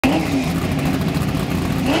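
Drag-race Ford Mustang notchback's engine running at the starting line, its pitch wavering, with a quick rev rise at the start and another near the end.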